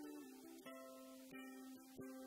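Solo ukulele played fingerstyle, a slow instrumental melody with a new note or chord plucked about every two-thirds of a second, each one ringing on over a held lower note.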